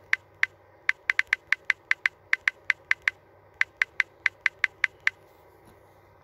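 Typing on a smartphone's touchscreen keyboard: a quick, sharp click for each key tapped, about two dozen clicks at several a second in an uneven rhythm, with a brief pause just past halfway.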